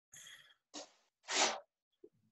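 Three short breathy bursts of a person's breath into a close microphone, the last and loudest about a second and a half in.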